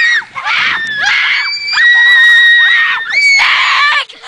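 Children screaming: a run of high-pitched screams, the longest held for about a second in the middle, cut off at the end.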